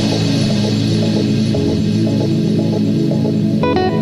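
Deep house track: a steady low droning chord holds throughout, and a run of short, higher notes comes in near the end.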